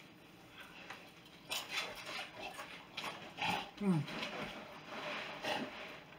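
Crunchy Paqui Chili Limón tortilla chip being bitten and chewed: an irregular run of crisp crunches, with a short "mm" about four seconds in.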